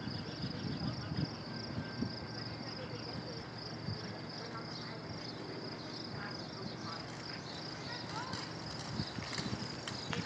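Outdoor ambience: a steady high-pitched pulsing insect trill over a low background rumble, with a few short rising chirps in the second half.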